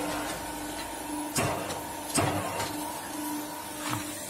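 QT4-18 hydraulic block machine idling with its hydraulic pump running: a steady machine hum, with two short knocks about one and a half and two seconds in.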